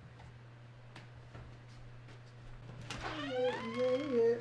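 A drawn-out vocal call with a wavering, sliding pitch, starting about three seconds in, over a steady low hum.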